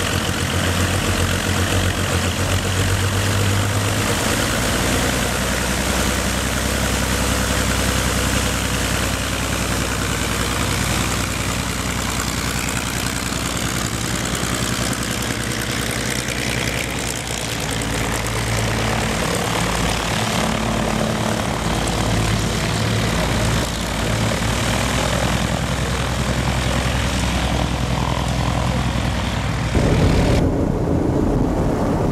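The twin six-cylinder inline de Havilland Gipsy engines of a Dragon Rapide biplane running on the ground, with a loud, steady engine and propeller drone.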